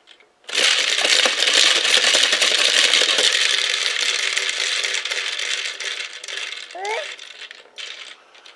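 Push-down spinning top toy with a clear dome of loose plastic balls, spun up by its plunger: the balls rattle continuously inside the spinning dome, starting about half a second in and slowly dying away as the top winds down near the end.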